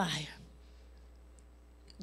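A woman's preaching voice trails off in the first half-second, leaving a pause of low, steady room hum through the PA. A couple of faint clicks come near the end.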